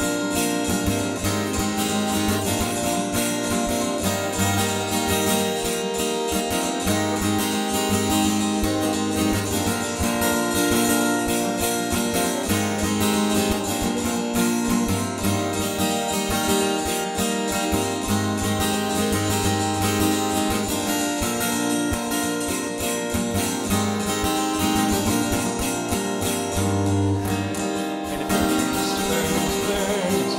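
Acoustic guitar strumming chords, an instrumental passage with no singing.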